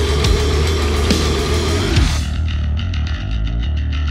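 Heavy metal music with distorted guitar and drums. About two seconds in it turns muffled, with a fast, even rhythm.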